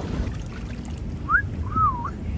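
A two-part wolf whistle in the second half: a quick rising note, then a longer note that rises and falls. Under it runs a steady low rumble.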